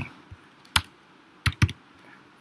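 Computer keyboard keys being typed, a few separate keystrokes: a strong one just under a second in and a quick pair about a second and a half in.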